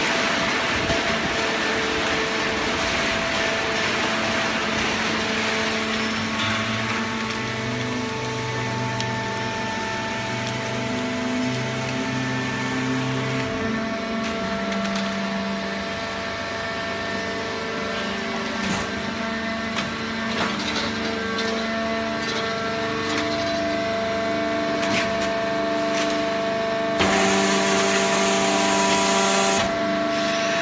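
Fully automatic horizontal hydraulic baler running: a steady hum from its hydraulic pump and motor, whose tones step in pitch as the load changes, with scattered cracks from the waste paper and cardboard being pressed. A louder rushing noise comes in about three seconds before the end.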